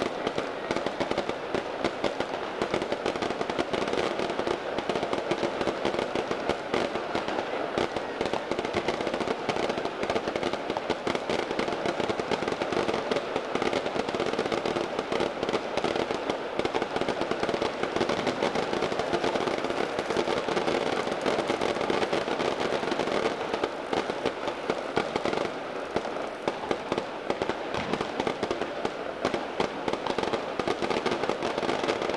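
Firecrackers going off in a dense, unbroken crackle of rapid pops, many at once with no pause.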